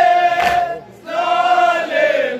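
A group of men chanting a nauha (Shia lament) together, with one loud unison hand-strike of matam chest-beating about half a second in. The chant breaks off briefly near the middle and then resumes.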